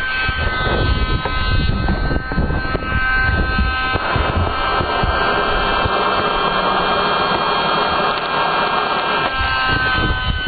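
Small battery-operated fan whining steadily as it blows air into a charcoal gasifier's air inlet to draw up the fire. A steady hiss joins in about four seconds in and stops shortly before the end.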